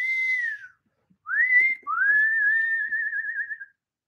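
A man whistling through his lips in three phrases: a short falling note, a quick rising note, then a long held note that wavers more and more towards its end.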